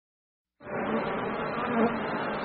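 Insect-like buzzing drone from an electronic remix intro, starting suddenly about half a second in and holding at a steady level, with a brief swell near the end.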